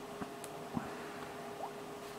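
Quiet room tone with a faint steady hum and a few soft, small clicks.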